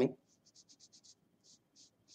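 A woman's word trails off, then a run of faint, short scratching sounds, several a second.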